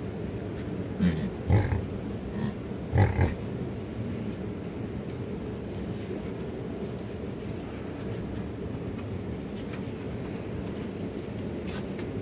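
Yak calves grunting, a few short calls about one and three seconds in, over steady background noise.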